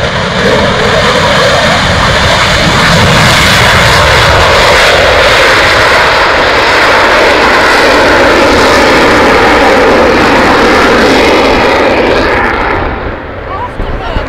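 Eurofighter Typhoon's twin EJ200 turbofan jet engines at take-off power as it rolls down the runway and climbs out. The loud jet noise builds over the first few seconds, holds, and eases off shortly before the end.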